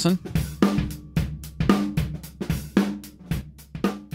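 Recorded rock drum kit played back through its overhead microphones with the Oxford Dynamics compressor and Inflator bypassed, a hit about every half second. Unprocessed, the kit sounds quite flat.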